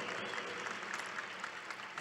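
A large crowd applauding, the applause slowly dying down.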